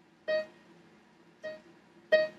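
Electronic keyboard sounding one short note twice, the same pitch each time: a brief clear tone near the start and a fainter one about a second later.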